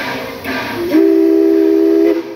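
The Tommy G. Robertson steam locomotive's whistle sounds one long, steady blast of several notes at once, starting about a second in. Just before it there is a single exhaust chuff.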